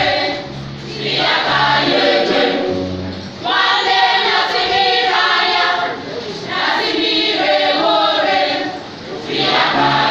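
Church choir of mostly women's voices singing together, in phrases about three seconds long with short dips between them.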